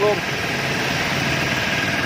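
Toshiba belt-driven piston air compressor running steadily under its electric motor, an even mechanical hum with a thin, steady high whine, as it pumps up its tank.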